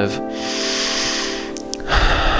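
Soft background music of steady held tones, with a long breath out lasting about a second, then a short breath in near the end.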